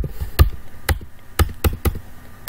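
Computer keyboard keys struck sharply about six times in quick, uneven succession: repeated Enter presses skipping through empty form fields.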